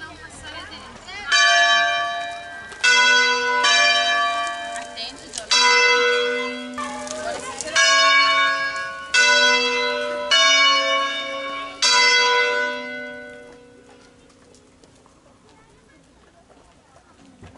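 Wheel-swung church bells of a five-bell peal in A ringing a funeral concerto. About eight single strokes come one after another at uneven gaps of one to two seconds, each ringing on with a long hum. After the last stroke, near the end, the ringing dies away.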